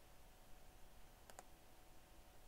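Near silence: faint room tone, with a single computer mouse click a little over a second in.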